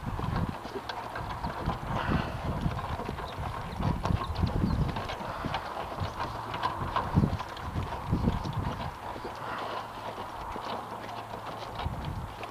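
Horse's hooves clip-clopping steadily on a dirt track as it pulls a two-wheeled cart.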